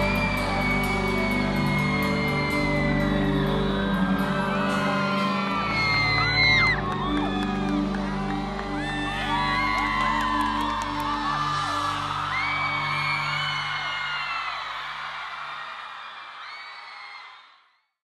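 Concert music with a crowd of fans screaming and cheering over it, the shrill cries thickest in the middle. The sound fades out over the last few seconds.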